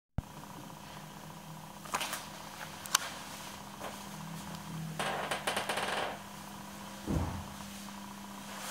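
Handling noise and footsteps from a handheld camera being carried through an empty room: two sharp clicks about two and three seconds in, a rustling stretch around the middle, and a low thump near the end, over a steady faint hum.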